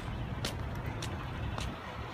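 Footsteps of a person walking on asphalt, short sharp steps about two a second, over a low steady rumble.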